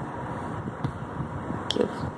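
Soft rustling and handling of cotton fabric in a plastic embroidery hoop during hand stitching, with a couple of faint clicks.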